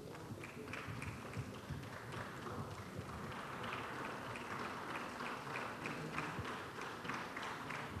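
Audience applauding, a dense patter of many hands clapping that swells about three seconds in.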